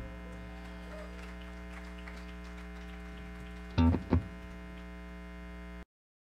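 Steady electrical hum from the band's amplifiers and PA, left ringing on after the song has ended. Near four seconds two short loud sounds come about a third of a second apart, and the sound cuts off abruptly just before the end.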